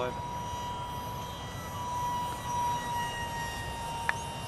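Micro RC jet's 30 mm electric ducted fan whining overhead: a steady high tone that swells a little midway through, over wind rumble on the microphone.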